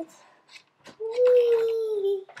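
A child's voice holding one long, slightly falling note, a drawn-out 'wheee', starting about a second in, after a couple of faint clicks.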